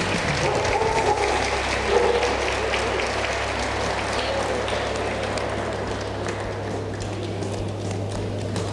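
Audience applauding, a dense patter of many hands that eases off slightly toward the end, with a steady low hum underneath.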